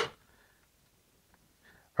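A DeWalt 12-volt cordless drill driving a one-inch self-feed spade bit into wood cuts off almost at once, stalled in the cut on its high-speed setting, which is too fast for this bit. After that there is near silence with a couple of faint ticks.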